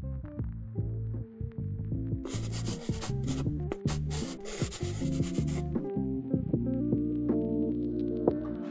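Intro jingle music with sustained low notes. About two seconds in, a scratchy brushing sound effect of paint strokes on paper runs over it for about three seconds.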